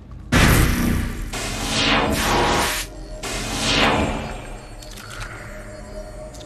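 Film soundtrack: a sudden loud hit about a third of a second in, then two falling whooshing sweeps over the score, settling to a low rumble after about four and a half seconds.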